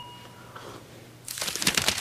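A chime rings and fades out in the first half second. About a second and a half in comes a short burst of crinkling from a paper towel being handled.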